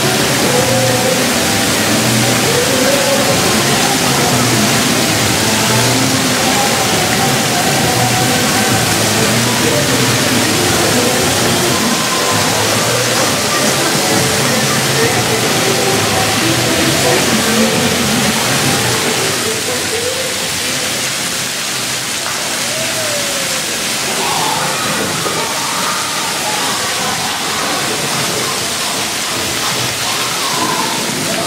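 Steady hiss and splashing of splash-pad fountain jets and water sprayers, with music and voices underneath.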